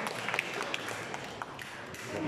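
Audience applause thinning out to scattered claps and fading.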